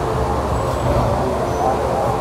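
Steady low rumble of background traffic and bustle, with faint indistinct voices.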